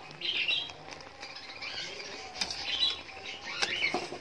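Thick jaggery syrup boiling hard around whole potatoes in a pan, bubbling and popping irregularly, with a few sharp clicks of a metal spoon against the pan near the end.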